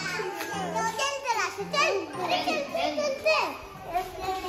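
Children's excited high voices and squeals, with several sharp falling cries, over background music with short steady bass notes.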